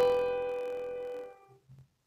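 A D-G-B chord (G major) played on a Yamaha PSR-S970 keyboard's piano voice, ringing and fading, then released about a second and a half in. It is the chord that harmonizes 'ti' in the C major scale.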